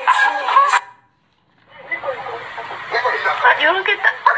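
Music with a rapping voice that cuts off abruptly under a second in, a short gap, then a person's voice over room noise, growing more animated toward the end.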